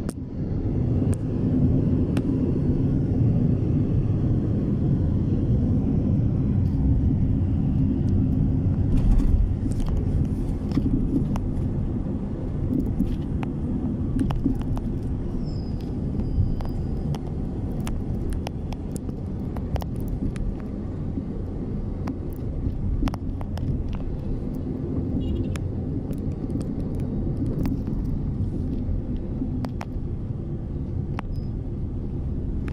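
Steady low rumble of a moving vehicle, a little louder in the first third, with scattered small clicks and knocks from the hand-held camera.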